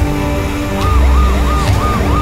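Trailer music with a heavy bass drone. From about a second in, a police siren joins it in a fast yelp, rising and falling about five times a second.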